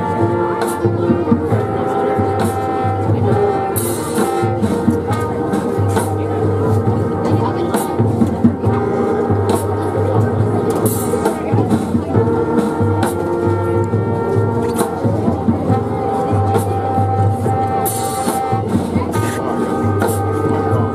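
High school marching band playing on the field: trumpets and trombones over sousaphone, with snare, bass drum and cymbals. A low bass figure repeats in short phrases, with cymbal crashes now and then.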